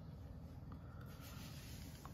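Quiet room tone: a faint steady low hum with faint rubbing or scratching.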